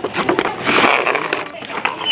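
Cardboard packaging rustling and scraping as a toy RC rock crawler is handled in its box tray, with scattered small clicks; loudest about a second in.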